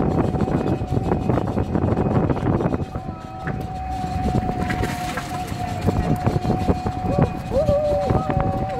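Traffic noise with a thin, steady high tone running through it, and people's voices that become clearer near the end.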